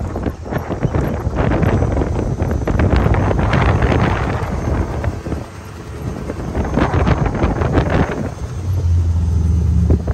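Can-Am Maverick 1000 side-by-side driving over sand dunes, its V-twin engine running under wind buffeting on the microphone. The sound eases briefly about halfway through, then settles into a steady low engine note near the end.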